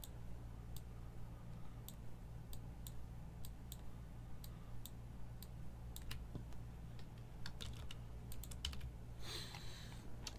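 Computer keyboard keys clicking faintly in scattered, irregular taps over a steady low hum, the taps coming closer together near the end, followed by a brief rush of noise.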